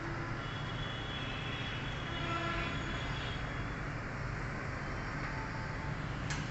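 Steady background noise with a low hum, and faint high tones drifting in and out.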